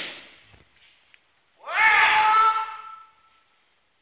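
A kendo fighter's kiai: one long, high-pitched shout starting just under two seconds in, rising sharply and then held for about a second and a half, dying away in the echo of a sports hall.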